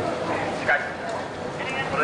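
Busy pedestrian street ambience: a steady hum of traffic and crowd noise with voices. A short high-pitched call rings out briefly about half a second in, and another starts near the end.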